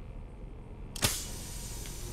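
A single sharp mechanical click about a second in, with a short ringing tail, over a low steady hum.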